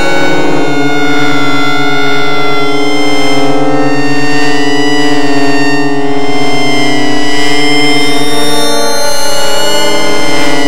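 DIN Is Noise software synthesizer playing a dense, sustained chord of many sine-like tones, some wavering slightly and a few slowly drifting in pitch.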